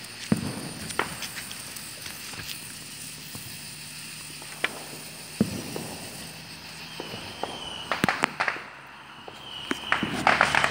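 A lit hand-held sparkler fizzing, with scattered sharp pops and crackles throughout and a cluster of louder cracks about eight seconds in.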